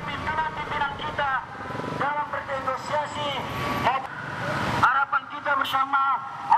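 A voice speaking over a steady din of motorcycle traffic. The traffic noise stops abruptly about five seconds in, leaving the voice.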